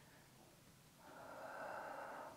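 A single soft breath out, heard as a hiss lasting just over a second, starting about a second in.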